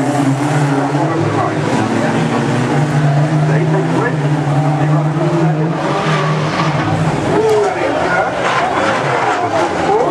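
Reliant Robin race cars' engines running and revving around the track, with tyres skidding, and voices heard over them.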